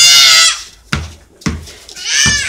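A child's loud, high-pitched drawn-out shriek that cuts off about half a second in, followed by two rubber basketball bounces on concrete a little over half a second apart.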